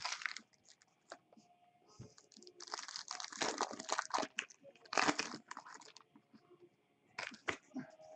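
Foil trading-card pack wrapper crinkling as it is handled, with cards being shuffled, in irregular bursts that are loudest about three to five seconds in and again near the end.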